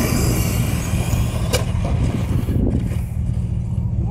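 Radio-controlled cars' motors whining at a high pitch as they speed away, the whine fading out about two and a half seconds in. Under it is a heavy, steady low rumble, and there is a single sharp click about a second and a half in.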